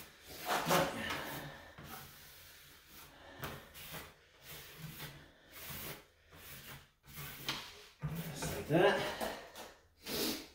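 A notched trowel scraping and spreading adhesive across the back of a plastic tub surround panel, in a series of irregular strokes.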